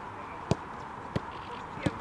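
A football struck three times in a passing drill on a grass pitch: sharp thuds about two-thirds of a second apart, the first the loudest.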